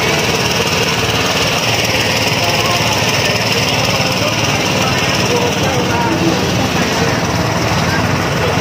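Busy outdoor market ambience: a steady, loud noise with scattered voices of the crowd mixed in.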